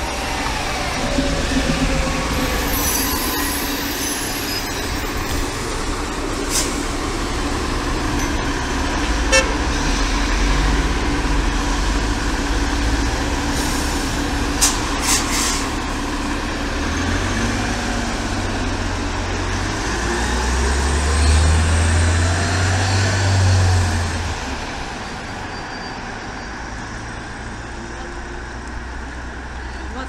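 City transit bus engine running at a stop, then pulling away: the rumble swells with rising pitch as it accelerates, loudest past the middle, and fades off toward the end. A few short sharp clicks come earlier, over steady street traffic.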